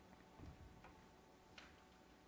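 Near silence: room tone with three faint short clicks.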